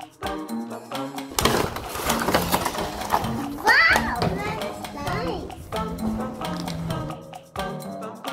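Cardboard box and plastic tray of a toy makeup kit rustling and scraping as the kit is unpacked, loudest from about a second and a half in to past the middle, over background music with a plucked-string beat. A child's voice rises briefly in the middle of the noise.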